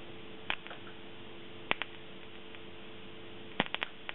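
Sharp electrical snaps as capacitor bank leads discharge across the contacts of an AMD CPU: one snap about half a second in, two close together near the middle, and a quick run of four near the end. A steady electrical hum runs underneath.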